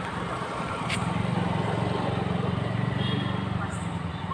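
A vehicle engine running steadily with a rapid low pulse, with people's voices in the background.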